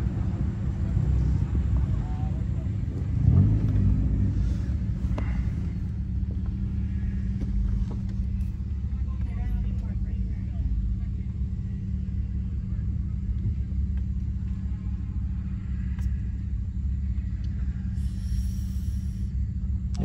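Acura's engine idling steadily, heard from inside the cabin as a low rumble while the car waits in a queue, with a brief louder swell about three and a half seconds in.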